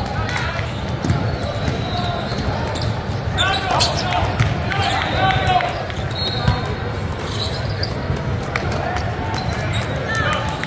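Basketball game sound on a hardwood court: the ball bouncing and sneakers squeaking, with short squeals about three and a half and five seconds in, under the steady chatter of players and spectators in a large hall.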